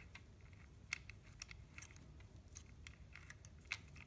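Faint, scattered small clicks and ticks from a gloved hand handling the solenoid wiring loom and connectors on an automatic transmission valve body.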